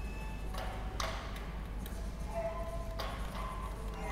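Sparse contemporary chamber music for guitar, flute, cello and violin: a few sharp attacks that ring on, about a second in and again near three seconds, with short held notes between them.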